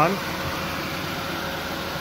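A car's 16-valve VVT engine idling steadily under the open hood, a continuous even running hum.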